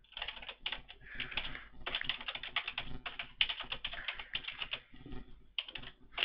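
Computer keyboard typing in quick runs of keystrokes, with a short pause about five seconds in.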